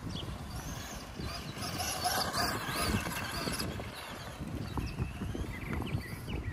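Wind buffeting the microphone, with the distant whine of a Traxxas Slash's brushed electric motor rising and falling in pitch as the RC truck is driven around the dirt track, most clearly in the middle seconds.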